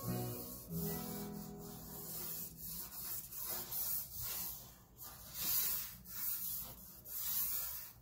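Charcoal stick scratching and rubbing across drawing paper in a series of quick, uneven strokes, about one or two a second. Faint background music runs under the first couple of seconds.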